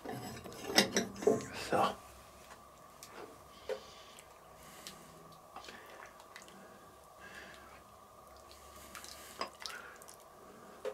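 A ladle dipping into a cast-iron Dutch oven of stew and serving it into bowls: scattered soft knocks and clinks of the ladle against the pot and the bowl.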